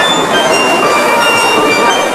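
Steel pan band music: many bright, ringing pan notes overlapping at a steady level.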